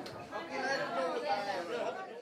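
Indistinct chatter of several people talking at once, with no one voice standing out.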